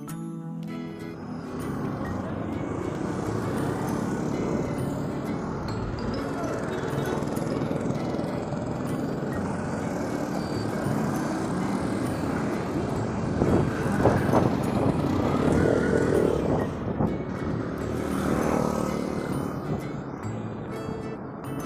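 City street traffic, motorcycles and cars, heard from a moving bicycle, with background music laid over it. It starts about a second in and swells at a couple of points after the middle as vehicles go by.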